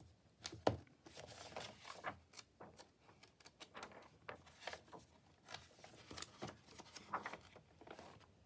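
Pages of an old hardcover book being turned by hand: soft paper rustling and flicks, the sharpest a little under a second in.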